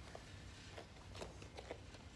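Quiet room tone with a low steady hum, broken by a few faint, light taps and rustles as two people in cloth uniforms move through a hand-to-neck punching drill.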